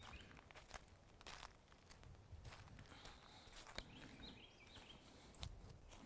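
Faint footsteps on grass and sandy ground, irregular soft steps, with a few bird chirps in the background.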